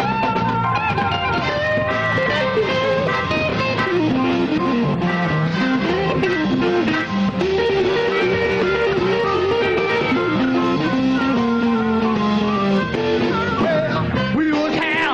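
A live blues band plays an instrumental break: an electric guitar solo with bending notes over bass and drums.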